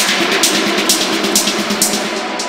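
Techno music: a steady drum beat with sharp snare and hi-hat hits about twice a second over held synth tones, with little deep bass.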